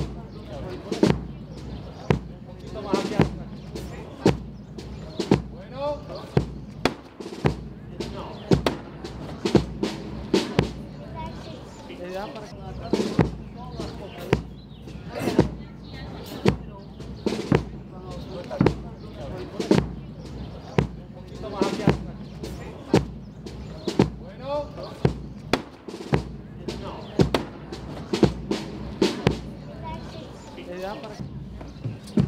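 Procession drum struck in sharp, steady strokes, roughly two a second, setting the pace for the bearers, over a crowd's chatter.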